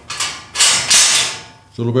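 Barred metal cell door being unbolted and pulled open: a loud metallic scrape and rattle of the bolt and gate that fades out. A man starts speaking near the end.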